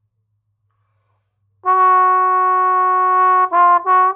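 Solo trombone: after about a second and a half of silence it comes in on a long held note, then moves into a run of short separate notes near the end.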